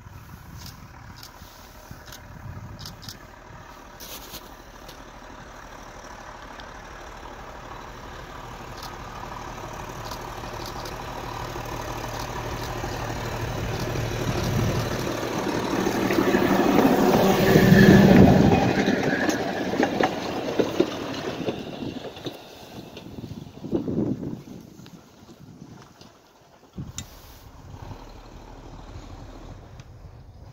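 East Broad Top 1927 M-1 gas-electric motor car (doodlebug) running along the track, its engine sound growing steadily louder as it approaches. It is loudest as it passes about eighteen seconds in, then fades away.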